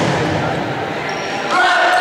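Reverberant sports-hall noise from a ball match: a ball bouncing on the court floor amid players' and spectators' voices. A long steady held tone comes in about one and a half seconds in.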